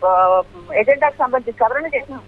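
Speech only: a news reporter talking in Telugu over a phone line, the voice thin and cut off above the usual phone band, with a long drawn-out vowel at the start.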